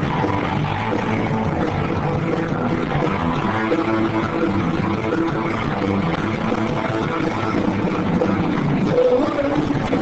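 Garage rock band playing live, electric guitars in a dense, steady wall of sound.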